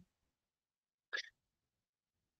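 Near silence, broken once a little after a second in by a single brief, faint sound.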